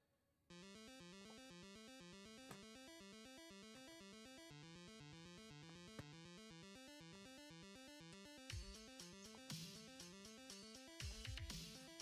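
Faint background music with a steady, repeating stepped melody. In the last few seconds a few short scraping noises join it, from fingers picking at and lifting the protective film on an acrylic panel.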